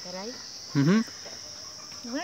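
Insects trilling in one steady, high, unbroken note. Over it come two brief vocal sounds from a person, one at the start and a louder one just under a second in.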